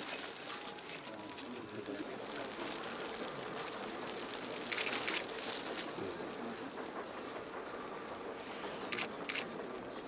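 Outdoor background: a steady hiss with faint, indistinct voices, and brief rustling noises about halfway through and again near the end.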